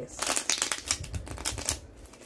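Tarot cards being shuffled in the hands: a rapid run of papery card clicks for nearly two seconds.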